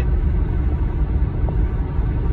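Steady low rumble of a car driving along, engine and tyre noise heard from inside the cabin.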